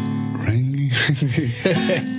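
Acoustic guitar playing held chords that come in at the start after a brief pause, with a man's voice over it.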